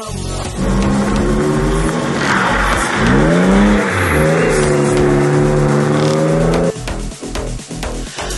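A drift car's engine held at high revs as the car slides sideways on wet asphalt, with tyre squeal. About three seconds in the engine note drops and climbs again sharply, and near seven seconds the engine sound cuts off abruptly.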